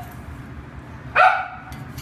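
A dog barks once, a single short bark a little over a second in.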